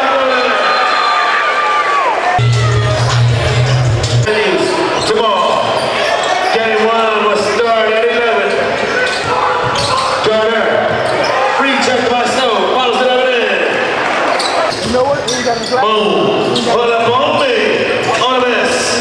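Basketball dribbling and bouncing on a gym floor, with the voices of players and spectators echoing in a large hall. A low steady hum sounds for about two seconds, starting a little over two seconds in.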